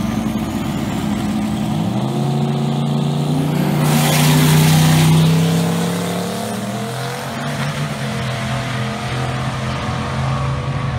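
Two drag-racing cars launching and accelerating hard down the strip, their engines rising in pitch as they pull away. The sound peaks about four to five seconds in, then fades as the cars run off down the track.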